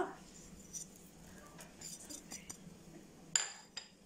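Faint clinks of crockery as salt is tipped from a small dish into a bowl of liquid dough mix, with one sharper clink near the end.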